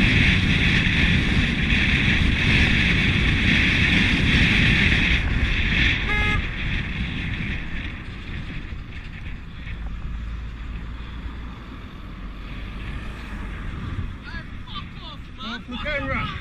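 Vehicle noise, a hissy rush over a low rumble, loud for the first six seconds and then fading. A brief tone sounds about six seconds in, and voices come in near the end.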